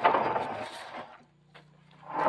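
A wooden board knocking against a brick wall: a sudden hit, then about a second of rough scraping that fades away.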